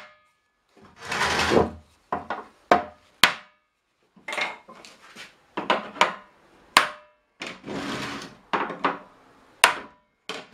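Hammer blows on a tool held against the rim of an oak barrel: a run of sharp wooden knocks at uneven intervals. A few longer scraping sounds of under a second each come between the knocks.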